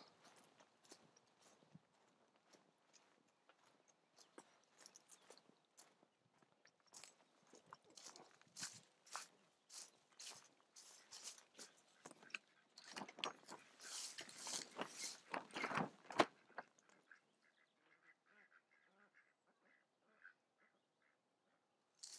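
Plastic greenhouse sheeting rustling and crackling in irregular bursts, loudest about three-quarters of the way through, followed by a few faint small ticks.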